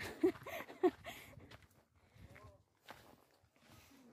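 A backpack making short squeaky noises as it swings, noises the hikers put down to the rice packed inside it, with faint footsteps on stone steps.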